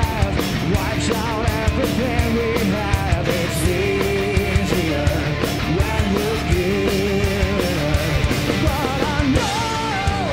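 Heavy rock band playing live at full volume: drums keeping a steady beat under dense band sound, with a male lead singer singing over it.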